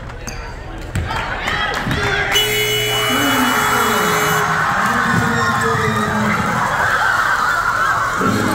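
Gym crowd and players cheering and screaming, swelling about a second in and staying loud as a free throw decides the game. A steady electronic horn, the game-ending buzzer, sounds for about two seconds under the cheers.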